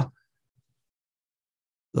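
Near silence: a dead-quiet pause in a man's speech, with the tail of one word at the very start and the next word beginning right at the end.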